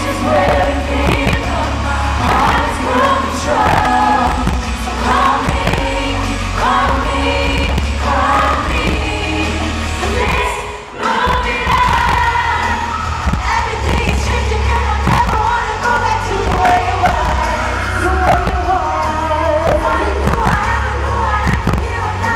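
Female pop vocal group singing live into microphones over an amplified backing track with heavy bass, as heard from the audience. The music dips briefly about halfway through.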